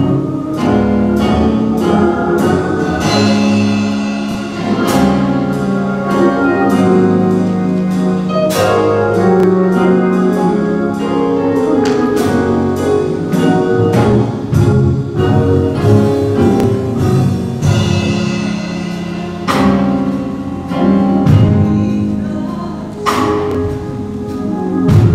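Gospel music in a church: instrumental accompaniment playing sustained chords with sharp note attacks, with singing over it.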